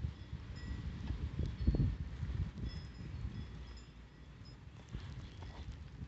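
Quiet outdoor background: an irregular low rumble with soft thumps, typical of a handheld phone microphone being moved or brushed by wind, and a few faint, short, high-pitched chirps.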